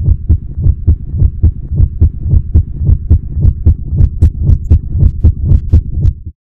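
A rhythmic low thudding, about four even beats a second, each beat with a sharp click on top. It starts and stops abruptly, like an edited sound effect.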